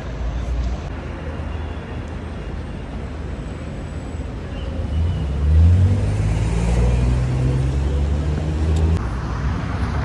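City street traffic with a steady low rumble; about halfway through, a motor vehicle's engine runs loud close by for a few seconds, then drops away about a second before the end.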